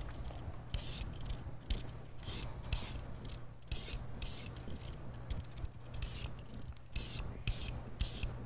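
Vegetable peeler shaving thin ribbons off a peeled daikon radish: a quick series of short rasping strokes, about two a second.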